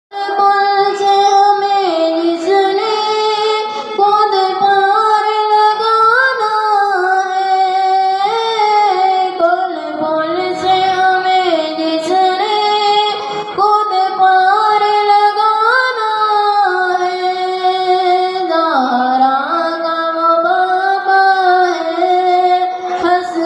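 A high voice singing a slow melody that moves in steps and holds long notes.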